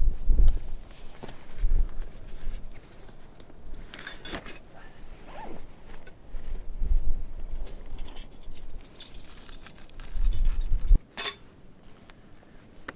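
Plastic bags and food packaging being handled on sand, with crinkling rustles and light clicks, a clear burst about four seconds in and another near the end. Gusts of wind rumble on the microphone four times; the strongest comes just before the last rustle.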